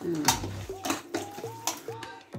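Mostly a person talking, in a short run of untranscribed speech.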